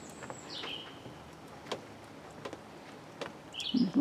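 Birds calling over a quiet outdoor background: a short call stepping down in pitch about half a second in and another just before the end, with a few faint scattered clicks between.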